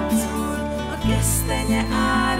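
A woman singing a song over a band accompaniment with bass and light percussion; the bass shifts to a new note about a second in.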